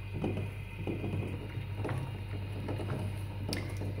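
Faint kitchen handling sounds, soft rustles and a few light clicks of utensils being moved, over a steady low hum.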